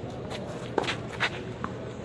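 Tennis rally on a clay court: three short sharp knocks in the second half, a racket hitting the ball and the ball bouncing, with footsteps scuffing on the clay.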